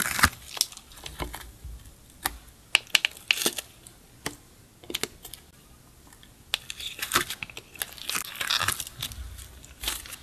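Close-up handling sounds: a string of sharp clicks and taps from fingernails and rubber charms against a clear plastic compartment case, with a denser crackling stretch about two-thirds through as glitter- and sequin-filled slime is picked up and squeezed.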